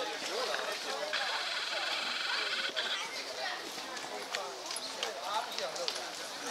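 People talking in the background, indistinct, with a high, rapidly pulsing trill for about two seconds starting about a second in.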